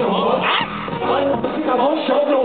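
Live hip-hop music played loud through a festival PA and heard from within the crowd, with a rapping or shouting voice over the beat.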